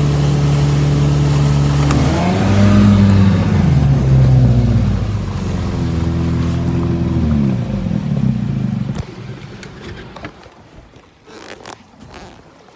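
40-horsepower outboard motor running at full throttle, its pitch rising and falling twice, then winding down and stopping about nine seconds in. A few knocks and clatters follow in the quiet.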